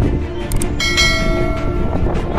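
Subscribe-button animation sound effect over background music: a short click about half a second in, then a bright bell chime that rings out and fades.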